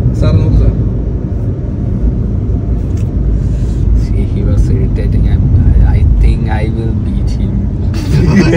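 Steady low road rumble inside a moving car's cabin, with men talking over it.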